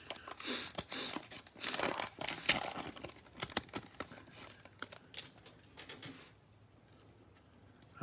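A Panini Mosaic trading card pack's wrapper being torn open and peeled back by hand, a busy run of tearing and crinkling with sharp crackles that stops about six seconds in.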